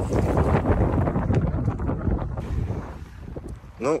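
Wind buffeting the microphone with a loud low rumble that eases off about two and a half seconds in.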